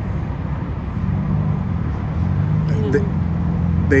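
Low, steady rumble of a nearby car engine and road traffic, growing louder about a second in.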